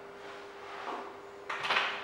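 Dry-erase marker scratching across a whiteboard, then a louder brief scrape about one and a half seconds in.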